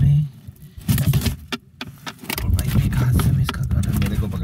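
Fish being handled and shifting in a plastic tub: a run of quick knocks, scrapes and rattles of fish and hands against the plastic.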